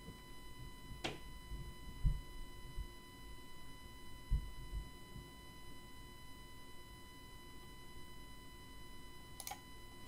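Two computer mouse clicks, about a second in and near the end, over a faint steady tone, with a few soft low thumps between them.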